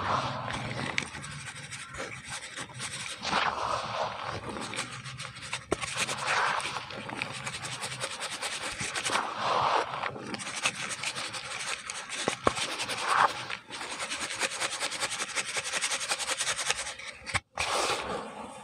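Dry crumbled cement being scraped and scooped with a plastic bowl, poured and rubbed between the hands. The sound is a continuous gritty rasping crunch, with louder swells every few seconds.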